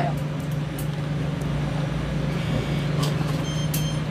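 Street noise dominated by a steady low hum like a running vehicle engine, with a short high-pitched beep about three and a half seconds in.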